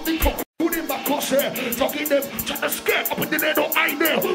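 Drum and bass played from a DJ set, with fast hi-hats and an MC rapping over the beat. The audio cuts out completely for a split second about half a second in.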